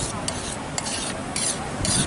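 Metal spatula scraping and stirring cooked yellow peas across a large flat metal platter, in short repeated strokes, about four in two seconds.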